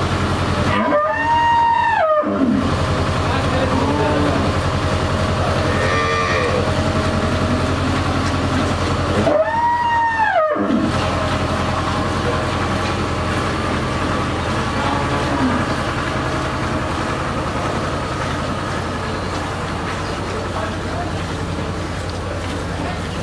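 Cattle mooing: two long calls, each rising and then falling in pitch, about a second in and again about nine seconds in, with fainter calls between them. A steady low mechanical hum runs underneath.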